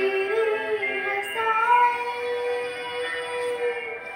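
A young girl singing a Hindi devotional bhajan, stepping up to a long held note about a second in.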